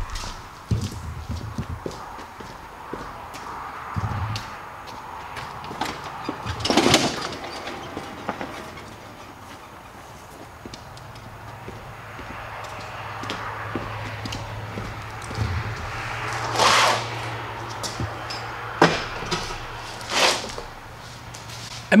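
Scattered clicks, knocks and footsteps on a concrete shop floor, with three short squeaks standing out. A low steady hum runs through the second half.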